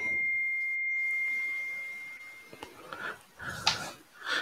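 A single steady high-pitched electronic tone that fades away over about two and a half seconds.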